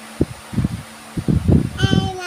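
A toddler's voice: short babbling sounds, then a high, drawn-out call near the end.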